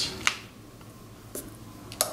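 Steel seal-carving knife chipping hard Qingtian seal stone: three short, sharp clicks, two close together at the start and a fainter one about a second and a half in.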